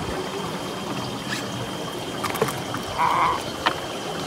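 Water lapping and trickling against a wooden canoe hull, with scattered small knocks and a short rustling burst about three seconds in. A faint steady high whine runs underneath.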